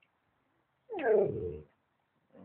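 Golden retriever giving one drawn-out vocal moan that falls in pitch, the 'talking' noise it makes as if trying to say something.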